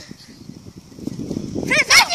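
A girl's high-pitched squealing laugh with wavering pitch near the end, the loudest sound here, over rustling and shuffling close to the microphone as someone moves past it.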